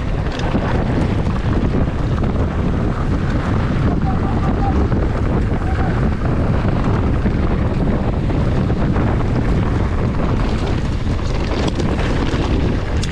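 Steady wind rush on the microphone during a fast mountain-bike descent, over the rumble of tyres rolling on loose gravel and dirt.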